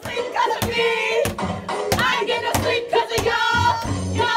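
Hands pounding in a steady rhythm, about one beat every two-thirds of a second, with a group of voices singing or chanting along, in the manner of a wake-up knock on a dorm room door.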